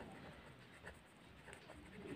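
Faint pen-on-paper writing sounds, a few soft scratches and ticks of the pen tip on notebook paper.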